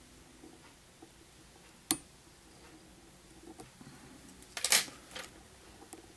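Quiet handling sounds of a whip finish being tied with a whip finisher tool and thread at the head of a fly in a vise: one sharp click about two seconds in, and brief rustles near the end.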